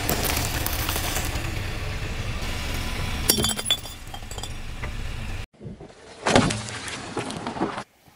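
A car tyre rolling slowly over a pile of small white balls, crushing them with a dense crackling and breaking over a low rumble. After a sudden cut, a single sharp crack about six and a half seconds in.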